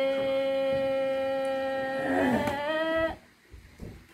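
A woman's voice holding one long sung note of a traditional Dao song, wavering briefly before breaking off about three seconds in.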